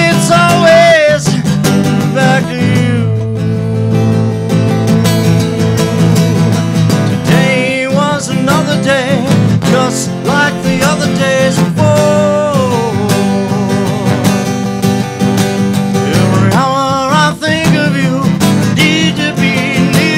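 Acoustic guitar strummed live through a PA, with a man's voice carrying a wavering melody over the chords in several phrases.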